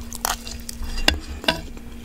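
Ramen fried rice being chewed right at the microphone, a soft crackly mouth noise, with a few sharp clicks of a metal spoon against the nonstick pan, the loudest about a second in and again half a second later.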